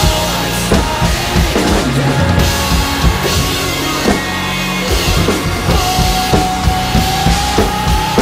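Spaun acoustic drum kit played hard along to a metalcore backing track: fast kick, snare and cymbal hits over sustained bass and guitar tones. A held high note comes in near the end.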